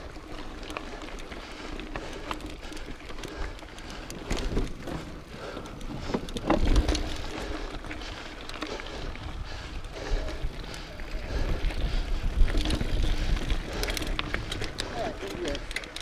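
Mountain bike rolling over a dirt and gravel singletrack, heard through a handlebar-mounted camera: a steady noise of tyres on dirt and wind on the microphone, with a low rumble and irregular knocks and rattles as the bike goes over bumps.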